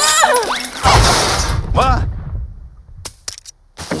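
Cartoon crash sound effect: after a short cry, a loud noisy crash with a deep rumble comes about a second in and fades over about a second. A few sharp clicks follow near the end.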